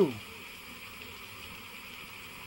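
Steady faint hiss with a light buzz under it, the background noise of the recording in a pause between spoken phrases; the end of a man's spoken word trails off at the very start.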